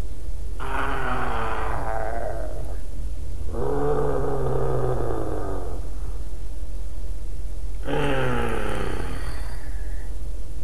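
A man's voice making mock-monster growls and groans, three long drawn-out growls, the first and last sliding down in pitch, over a steady low hum.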